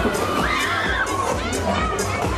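Riders screaming on a swinging pendulum thrill ride, with crowd cheering over fairground music.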